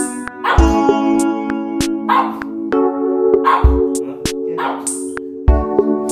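Background music with a steady rhythm over a pug's short barks.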